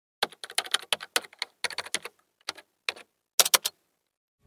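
Computer keyboard typing: a run of quick, irregular key clicks, ending in three louder clicks in quick succession.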